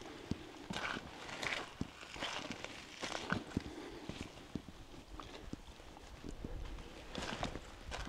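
Footsteps on rock and gravel: irregular taps and scuffs, bunched in a few short runs.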